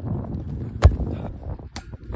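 A football kicked once: a single sharp thud a little under a second in, over low wind rumble on the microphone, with a fainter tap near the end.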